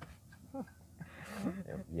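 Quiet, brief murmured speech inside a car's cabin over a steady low hum from the slow-moving car, with a short hiss about a second and a half in.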